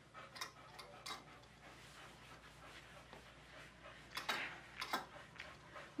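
Two rubber Zoom Groom curry brushes worked through a boxer's short coat: faint rubbing with scattered light clicks, the two loudest about four and five seconds in.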